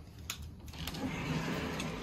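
A door being opened: a few soft clicks and knocks with a low rustling hiss in the middle.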